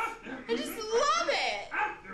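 A woman's high-pitched voice in short wordless exclamations, rising and falling in pitch.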